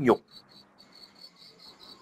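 Faint high-pitched insect chirping, an even pulse of about six chirps a second, after a man's last spoken word.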